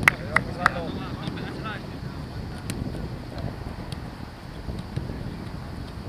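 Footballs being struck on a training pitch during a quick-passing drill: three sharp kicks in the first second and another a little before the middle, over steady wind noise and raised voices.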